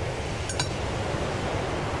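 Pause in the dialogue: steady low hum and hiss of background room tone, with a faint short click about half a second in.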